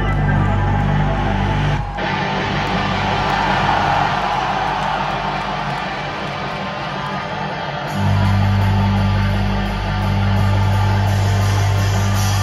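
Live hardcore punk band playing loudly through a concert hall's PA, with sustained electric guitar and bass chords ringing out. The audio cuts abruptly about two seconds in, leaving a thinner, hazier sound, and the heavy low end comes back about eight seconds in.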